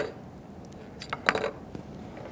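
A few light clicks and taps a little past the middle as the hand vacuum pump's hose fitting is worked off the valve on the evacuated tube.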